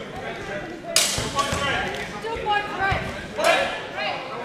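Swords striking during a fencing exchange: two sharp clashes, about a second in and again near the end, with dull thuds of footwork on the mat and voices in between.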